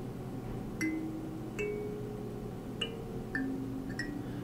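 Kalimba (thumb piano) plucked one tine at a time: four single notes spaced about a second apart, each ringing briefly, with a light click at each pluck and no settled tune.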